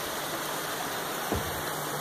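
Creek water running steadily, an even rushing hiss.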